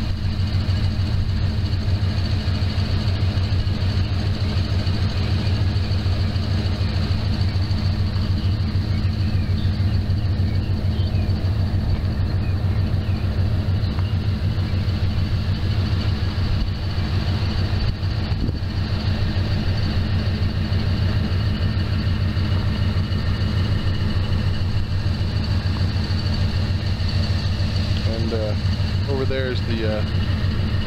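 Steady low engine drone and road noise of a vehicle being driven along a road.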